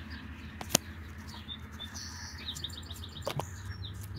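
Small birds chirping in short high calls, with a quick run of chirps a little past the middle. A sharp tap under a second in and a few softer clicks later come from the tarot deck being handled.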